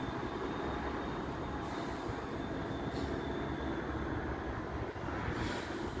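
Distant approaching Class 66 ('shed') diesel freight locomotive, a steady low rumble over the station's background noise, with two brief swells of hiss.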